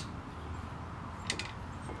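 Low, steady background hum, with one faint short tick a little past halfway.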